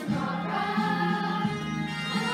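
Children's choir singing together, with low held accompaniment notes underneath that change about a second and a half in.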